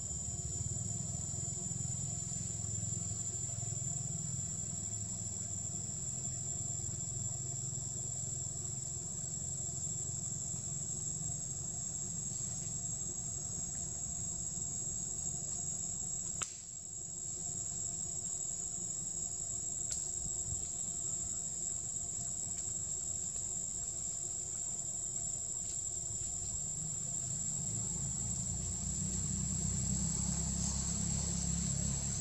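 Steady high-pitched insect drone over a low rumble, with a single sharp click about halfway through.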